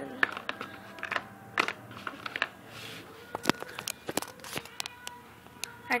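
Small plastic Littlest Pet Shop figures being put into a folded paper box: a string of light, irregular clicks and taps as they knock against each other and the paper, with faint paper handling.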